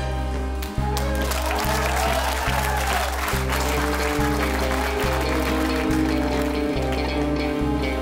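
Live big band playing an instrumental passage: a low bass note restruck in a steady pulse a little more than once a second under held chords, with an electric guitar playing over it.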